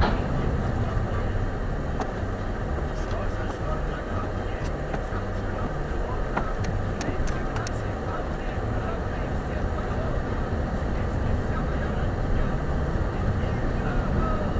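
Steady road and engine noise of a moving car, heard from inside the cabin, with tyres on a wet road and a few faint ticks a few seconds in. Muffled talk may lie underneath.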